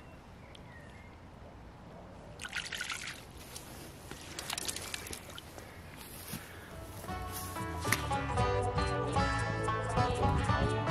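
Water splashing and dripping as a small jack pike is let go from a landing net, two short splashes a couple of seconds apart. Background music comes in about seven seconds in.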